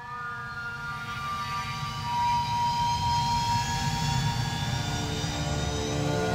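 Jet airliner engine whine slowly rising in pitch over a rumble that builds gradually, as from a jet spooling up, laid over steadily held musical tones.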